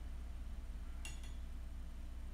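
A single light clink of teaware about a second in, a short sharp tick with a brief high ring, over a steady low hum.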